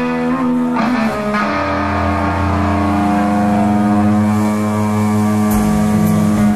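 Live rock band playing: electric guitar rings out in held chords, a low bass note comes in about a second and a half in, and drum hits enter near the end.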